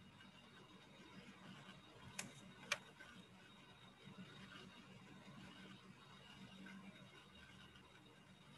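Near silence: a faint steady low hum of an open call microphone, broken by two sharp clicks about two seconds in, half a second apart.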